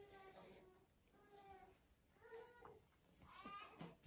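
Faint, short high-pitched vocal calls, about four of them, each bending slightly up and down.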